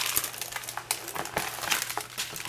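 Clear plastic film on a diamond painting canvas crinkling, with irregular crackles, as the canvas is handled and pressed flat by hand.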